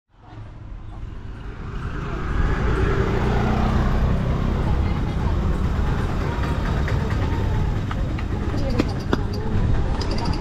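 Busy street-market ambience: steady traffic noise from the adjoining road mixed with people's voices and chatter, fading in over the first two seconds. A few sharp clicks near the end.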